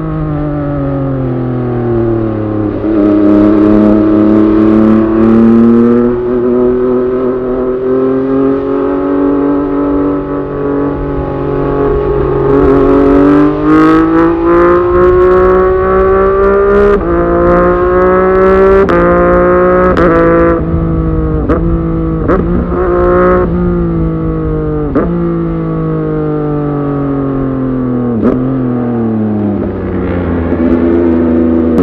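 MV Agusta F3 675's inline three-cylinder engine under way. The pitch climbs steadily as the bike pulls, then breaks sharply several times in quick gear changes about two-thirds of the way in, and falls away as the bike slows. Wind rush sits underneath.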